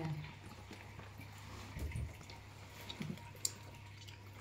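Goldfish aquarium's filter running: faint water trickling over a low steady hum, with a few small clicks.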